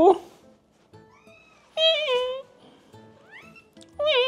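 Domestic cat meowing: one loud meow falling in pitch about two seconds in, with fainter rising meows shortly before it and again near the end.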